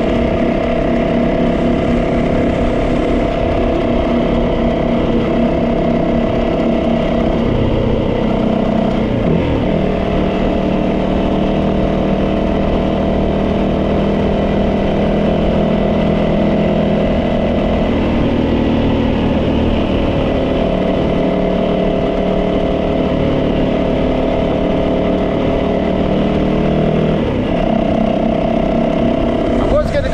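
Yamaha 450 motorcycle's single-cylinder engine running at a steady cruise, its note dropping in pitch about eight seconds in and again around eighteen seconds, then rising again near the end.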